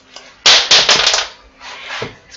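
Plywood word cutout knocking and scraping against a wooden surface as it is handled and set upright on its stands: a loud rapid run of clatters about half a second in, then a softer scrape near the end.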